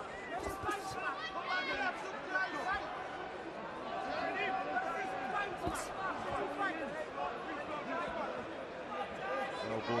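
Arena crowd at a live boxing match: many voices shouting and calling out over one another, with one long held shout or chant about four seconds in and a few sharp knocks.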